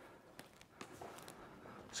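Faint footsteps and shuffling on gym floor mats, a few soft taps over quiet room tone.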